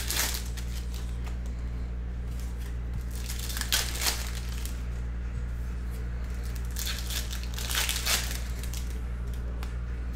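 2021 Panini Donruss Optic Football card pack wrappers torn open and crinkled by hand, in three short bursts: at the start, about four seconds in, and again around seven to eight seconds in.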